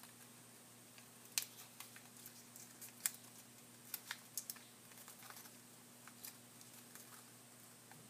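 Faint crinkles and light clicks of small origami paper being creased and reverse-folded by hand, a handful of scattered sharp ones, the clearest about a second and a half and three seconds in.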